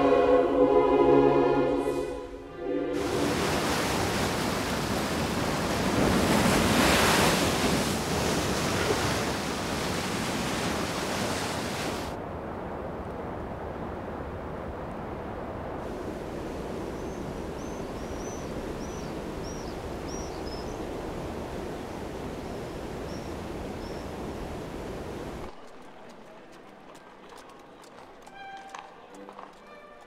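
Choir music ends about two seconds in. A steady rush of falling water from a waterfall follows, loudest at first and then quieter, with a few short high bird chirps in its second half. The rush cuts off near the end, leaving only faint sound.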